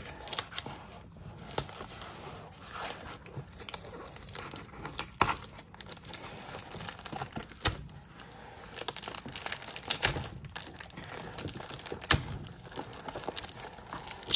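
Clear plastic packing bags crinkling as hands handle them, with sticky tape being peeled off a small bagged part. Irregular crackling with a few sharper snaps.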